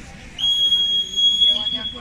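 Swimming referee's long whistle blast, one steady high note held for about a second that then fades away in the hall. It is the signal for swimmers to step up onto the starting blocks.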